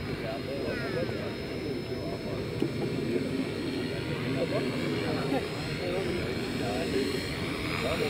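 Align T-Rex 450 electric RC helicopter in flight, heard as a thin, steady high whine of its motor and rotors, with people talking in the background.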